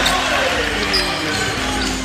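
Live basketball game audio: a ball bouncing on the court amid steady arena crowd noise, with faint voices.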